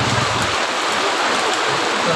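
Steady, even hiss of falling water, with a low buzzing hum that stops about half a second in.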